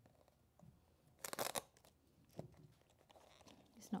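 Paper masking tape pulled off its roll in one short tearing rip about a second in, followed by a faint tap.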